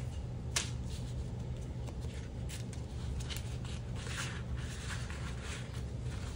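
Paper dollar bills and plastic binder sleeves rustling as cash is handled and slipped into a cash organizer, with a few light clicks, over a steady low hum.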